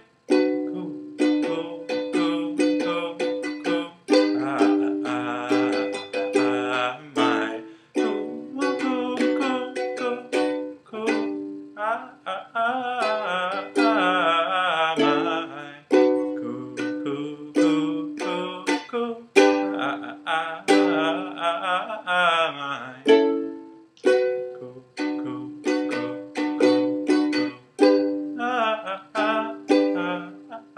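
Ukulele strummed in chords in a steady rhythm, the chord changing every few seconds.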